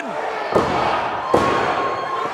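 Two thuds, a little under a second apart, of a referee's hand slapping the wrestling ring mat in a pin count, over crowd noise.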